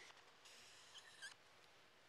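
Faint squeak of a felt-tip marker drawn across a cardboard chart, lasting under a second from about half a second in.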